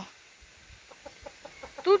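Domestic chickens clucking faintly, a run of short, quiet clucks.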